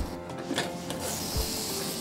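Stovetop pressure cooker with a weighted whistle: a couple of light metal clunks as the lid and handle are handled, then steam hissing out past the whistle weight from about a second in as the cooker reaches pressure.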